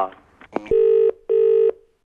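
A telephone handset click as the call is hung up, then two short steady buzzing tones at the same pitch: a phone line's tone after the call has ended.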